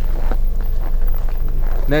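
Audi Q3 power tailgate rising to its open position, heard as a steady low hum, with a faint click about a third of a second in.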